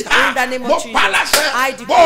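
A man's voice speaking loudly and animatedly, with a few sharp slaps or claps cutting through.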